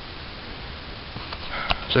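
Steady recording hiss, then late on a few light clicks and a short, sharp sniff as a person draws breath just before speaking.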